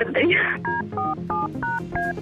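Telephone keypad dialling tones in a radio station jingle: five quick two-tone beeps, about three a second, over a music bed.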